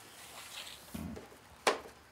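Wired fabric ribbon rustling as it is pulled off a plastic spool and stretched across a table, with one sharp knock about one and a half seconds in.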